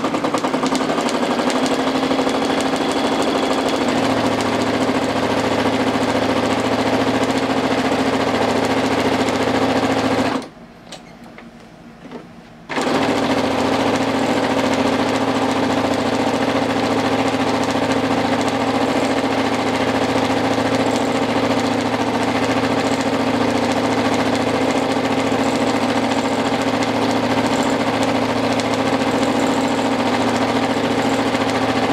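Brother NQ470 domestic sewing machine running steadily at speed while free-motion quilting. The motor and needle stop for about two seconds roughly ten seconds in, then start again and run on.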